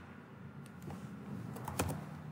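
Computer keyboard keystrokes clicking: two single clicks around the middle, then a quick run of about four near the end, over a low steady hum.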